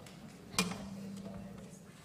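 A low string plucked once, a sharp attack about half a second in, then a single note ringing steadily for about a second as the players get ready.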